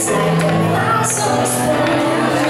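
Live music: a woman singing into a microphone over keyboard accompaniment, with sustained chords underneath the voice.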